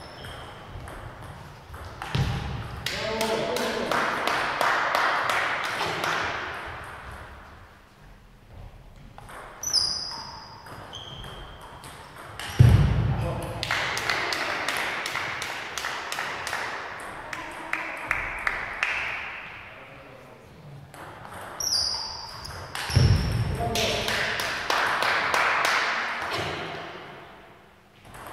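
Table tennis rallies: the ball clicking in quick succession off bats and table, in three rallies, with short high squeaks between points. The strokes sound hollow and echoing in the large hall.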